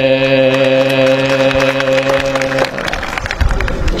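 Chanting: a low voice holds one long note over many quick claps, breaking off about two and a half seconds in, leaving a rougher, noisier stretch.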